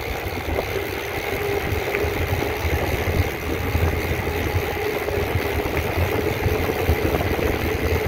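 Wind buffeting the microphone and tyres rolling on smooth asphalt as a mountain bike coasts fast downhill, a steady rumble with no break.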